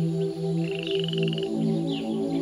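Soft ambient background music of sustained low notes, with an animal's rapid pulsed trill lasting about a second in the middle and faint short chirps around it.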